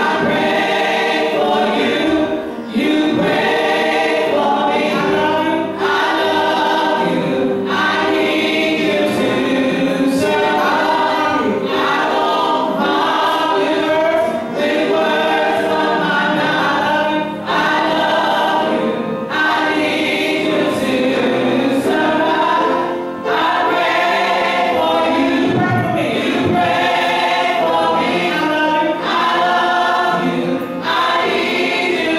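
A gospel choir singing with music, steady and loud, with short breaks between phrases.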